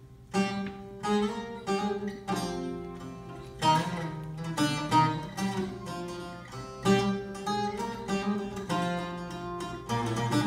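Two Greek laoutos strummed and plucked together with a bowed violin, playing an Epirote traditional tune; the full ensemble comes in strongly about half a second in, with sharp plucked attacks every half second or so.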